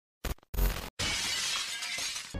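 Glass-shattering sound effect: two short sharp hits, then a crash of breaking glass that tails off over about a second.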